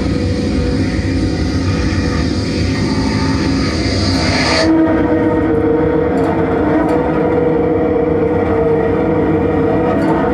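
Experimental drone music: a dense low rumble with held steady tones, and a high hiss layer that cuts off suddenly about halfway through.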